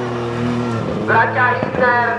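Ford Fiesta rally car's engine passing close by. It holds a steady note for about the first second, then its pitch swings quickly up and down as the throttle is worked.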